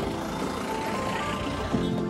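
Background music with a light melody of short steady notes, over a low rumble of street traffic.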